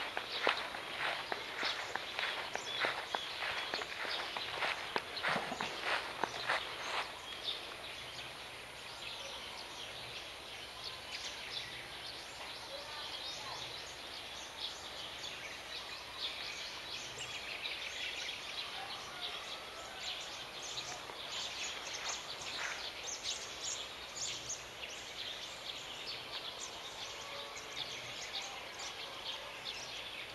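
Footsteps crunching over dry fallen leaves on grass for about the first seven seconds. After that comes a steady outdoor background hiss with scattered faint clicks and a few faint bird calls.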